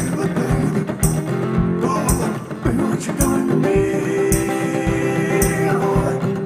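One-man band playing live: strummed acoustic guitar and a man singing over a steady low beat, with a long held note from a little past the middle.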